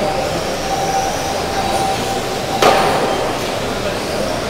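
Small electric 1/12-scale GT12 radio-controlled pan cars racing on a carpet track: a steady hiss of motors and tyres with a steady high tone beneath, and one sharp knock about two and a half seconds in.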